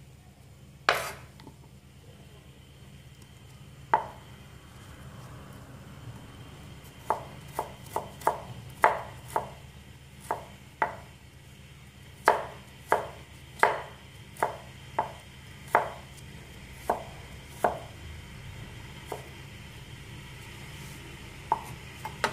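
Cleaver slicing ginger into thin strips on a round wooden chopping board: sharp knocks of the blade through the ginger onto the wood. There are two single strokes in the first few seconds, then an uneven run of strokes, about one or two a second.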